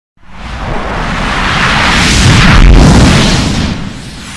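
A loud, distorted, explosion-like rumble from an effects-edited logo soundtrack. It starts abruptly, swells to a peak about two and a half seconds in, then dies away near the end.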